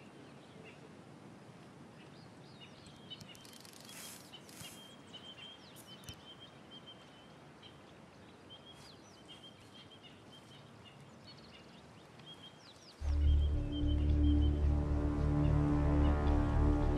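Quiet bush ambience with faint, repeated high chirps. About thirteen seconds in, loud music with deep sustained notes comes in suddenly and fills the rest.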